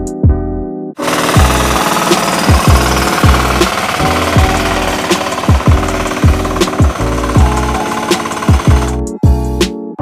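A loud, rapid mechanical clatter of a hand tractor's engine working in a flooded paddy, heard over background music with a steady beat. It starts about a second in and cuts off about a second before the end.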